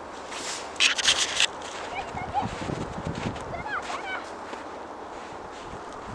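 Faint, distant children's voices calling across an open field, with a brief cluster of loud crackling, crunching noise about a second in.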